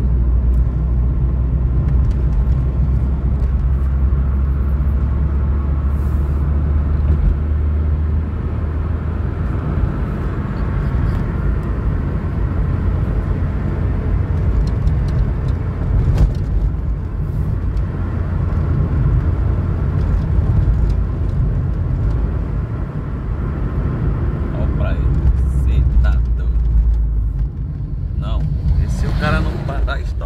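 Car cabin noise while driving on a rough, patched road: a steady low rumble of engine and tyres heard from inside the car.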